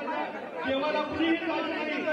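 Several men talking over one another in a heated argument, their voices overlapping in a crowded room.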